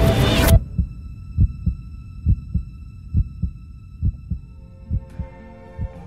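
A song cuts off suddenly about half a second in, and is followed by a heartbeat sound effect: low double thumps, about one pair a second, under a faint steady high tone. Soft orchestral music begins near the end.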